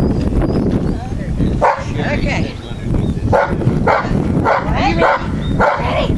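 Dog barking repeatedly, a string of short barks starting a little under two seconds in, over a steady low background noise.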